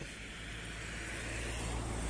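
Steady low rumble of road traffic, growing slowly louder.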